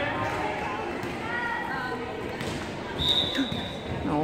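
Background chatter from spectators, a couple of knocks of a ball bouncing on the hardwood gym floor, then a single short referee's whistle blast about three seconds in, the signal to serve.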